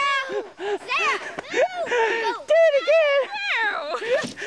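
Children's high-pitched voices calling out and squealing in play, several at once, with no clear words.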